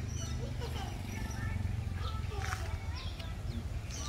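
Outdoor background of a steady low rumble, with faint distant voices and scattered short high chirps.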